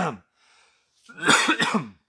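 A man coughs into his fist to clear his throat: one loud, harsh cough about a second long in the second half.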